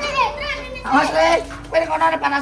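Young children's voices, talking and calling out over one another in short high-pitched bursts.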